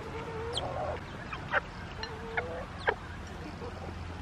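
Chickens clucking, with a low drawn-out call at the start and a few short, sharp high calls, the loudest about a second and a half in and just before three seconds.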